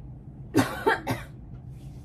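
A person coughing three times in quick succession, short harsh bursts about a quarter second apart.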